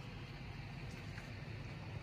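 Faint steady background hiss of quiet woodland ambience, with a couple of light ticks about a second in.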